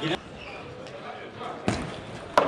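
A table tennis ball struck during a rally, one sharp click near the end.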